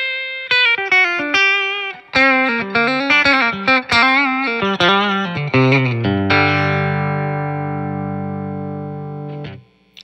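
Electric guitar (Caldwell Closet Classic S-style) on its bridge single-coil pickup, a Lindy Fralin Vintage Hot, playing a run of picked single notes and double-stops. About six seconds in it lands on a chord that rings out for about three seconds, then is damped.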